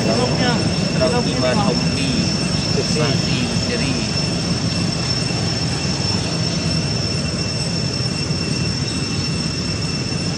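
Steady outdoor background rumble with thin, high, steady tones above it. A voice speaks briefly over it in the first few seconds.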